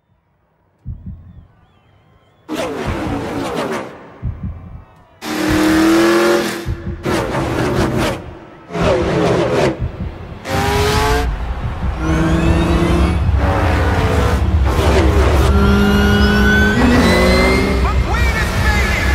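Designed trailer sound of stock-car racing engines. It comes in separate loud bursts of engines revving and passing, with short gaps between them, then runs on without a break from about halfway in, with rising whines near the end.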